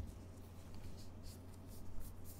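Faint, soft swishing of a gloved hand sliding and handling baseball cards in plastic holders: a few short rubs, over a steady low electrical hum.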